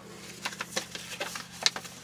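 Paper rustling and crinkling as an opened mailing envelope and its contents are handled, a run of small irregular crackles over a faint steady low hum.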